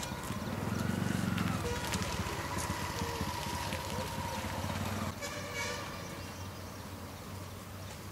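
A motor vehicle running with a held horn-like tone for about three seconds, fading after about five seconds.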